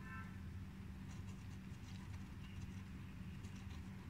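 Faint taps and short scratches of a pencil point dotting on paper, a few scattered strokes, over a steady low hum.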